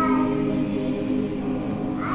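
Church choir singing an anthem, holding long sustained notes that slowly get quieter.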